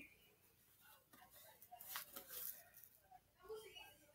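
Faint handling of a deck of playing cards: a few brief, soft rustles and slides, mostly in the middle.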